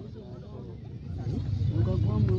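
Outdoor background in a pause between shouted phrases: a low rumble that swells over the second half, under faint voices from a crowd.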